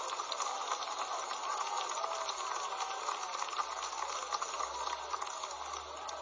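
Steady crowd noise from a church congregation, with many faint voices blended into it.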